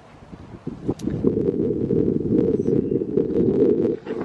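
Wind buffeting the microphone: a steady low rumble that starts about a second in, with a few faint clicks over it.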